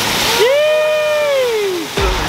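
Water pouring in a heavy stream through a trampoline mat and splashing onto the ground below. From about half a second in, a long drawn-out shout rises and then falls over it.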